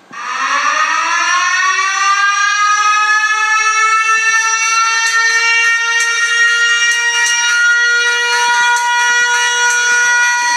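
A siren, of the civil-defense wailing kind, starts suddenly, rises in pitch over about two seconds and then holds a steady wail.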